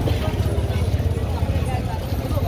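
Busy street at night: indistinct chatter of passers-by over a steady low rumble of traffic.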